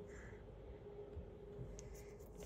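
Faint room tone with a steady low hum and a single light click near the end.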